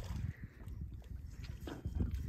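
Faint crunching and clicking of loose beach stones shifting underfoot, a few small clicks near the end, over a low rumble.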